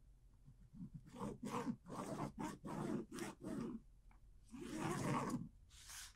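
A marking pen scratching short strokes on fabric along a ruler, about two strokes a second, followed by one longer rub.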